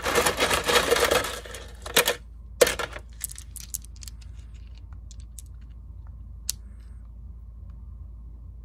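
Small rounded stones clattering together as a hand scoops a handful out of a plastic canister, a dense rattle for about two seconds. Then two more short rattles and a few scattered clicks of stones knocking together in the palm.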